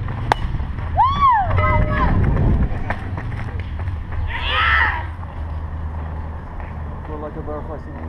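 A softball bat hits the ball with a single sharp crack just after the start. Players shout and call out across the field, with a steady low rumble underneath.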